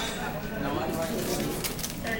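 Quiet voices murmuring around a dinner table, with a few brief crinkles of tissue paper being pulled out of a gift box.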